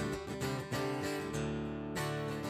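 Acoustic guitar strummed in chords, with no singing over it.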